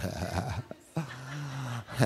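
A man's voice making wordless sounds: brief laughter, then one held, drawn-out vocal tone lasting about a second.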